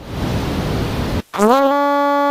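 Electronic track audio: about a second of hissing noise, a short break, then a held, steady pitched tone with many overtones that rises slightly as it starts.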